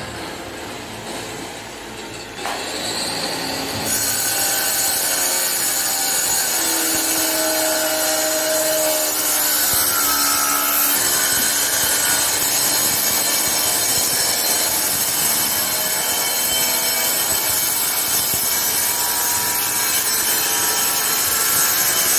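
Steady, harsh rasping noise like a tool sawing or grinding. It steps up in loudness about four seconds in and then holds.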